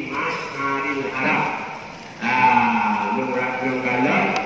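A man's voice chanting an Arabic prayer through a microphone and loudspeaker, in long drawn-out notes with a louder held phrase starting about halfway through.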